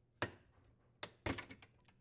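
Plastic water guide of an LG dishwasher being unsnapped from its mounting brackets on the stainless steel tub: a single thunk about a quarter second in, then a few lighter clicks and knocks about a second later.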